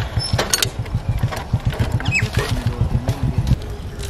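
Motorcycle engine idling: a steady, fast run of low firing pulses, with a few light clicks about half a second in.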